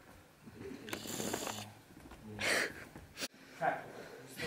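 Quiet, breathy human voice sounds, like exhales or hushed words, in two short bursts. A sharp click comes a little after three seconds in.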